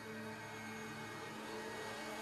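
A faint steady drone of a few held low tones over low room noise, unchanging throughout.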